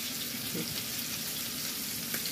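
Seasoned trout fillet searing in hot extra virgin olive oil in a frying pan: a steady sizzle.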